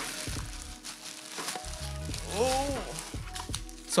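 Thin plastic packaging bag crinkling and rustling as it is pulled open by hand, with a brief hummed voice sound about halfway through.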